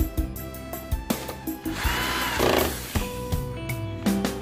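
Electric screwdriver driving a screw to fasten the power board into a satellite receiver's metal chassis: a brief motor whir about two seconds in that rises and falls in pitch. Background guitar music plays throughout.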